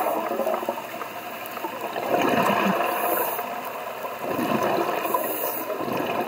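Underwater rushing and gurgling of a scuba diver's exhaled bubbles, swelling twice, about two seconds in and again about four and a half seconds in, as the diver breathes through a regulator.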